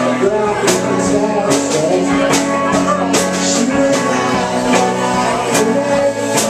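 Live rock band playing: electric guitar over a drum kit, with drum hits on a steady beat about every second.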